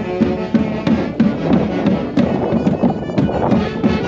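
Andean Santiago-style festival folk music: melody instruments playing over a steady beat of about two strokes a second.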